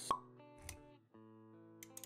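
Intro music with sustained notes, punctuated by a sharp pop just after the start and a soft low thump about half a second later, as animated-logo sound effects.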